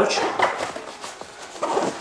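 A camera being put into a fabric hip pouch on a backpack's hip belt: rustling of the pouch fabric with a few short, soft knocks.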